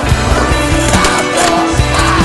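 Loud rock music with a steady drum beat.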